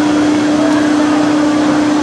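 Spinning amusement ride's machinery running with a loud, steady hum at one constant pitch over a noisy rush.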